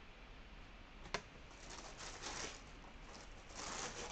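Faint rustling of paper and packaging being handled, with one sharp click about a second in.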